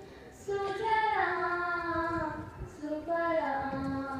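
Voices singing a slow song, long held notes stepping down in pitch, after a brief breath pause at the start.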